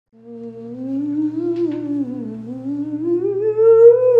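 A woman humming with her voice sliding slowly: a wavering rise, a dip about two seconds in, then a climb to its highest, loudest note near the end, over a steady low hum.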